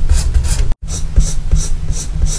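Colored pencil shading on sketchbook paper, close up: quick back-and-forth scratchy strokes at about three a second. The sound cuts out for an instant just under a second in.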